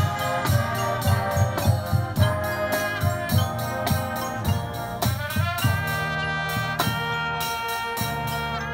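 High school marching band playing: brass chords over steady drum hits about twice a second, with a quick rising run about five seconds in, then a long held chord near the end.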